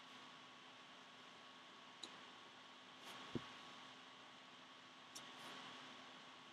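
Near silence: faint steady room hiss with a few soft clicks and one low thump about halfway, as trading cards are handled.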